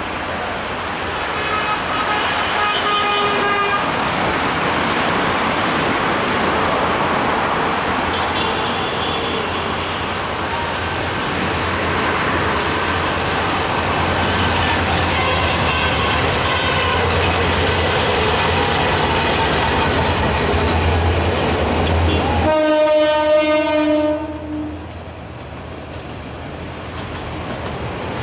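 Diesel locomotive hauling a passenger train as it approaches, a dense rumble with a low engine hum that grows heavier over the first twenty seconds, the horn sounding faintly a few times. About 22 seconds in comes a loud, steady multi-note horn blast, then the coaches roll past more quietly.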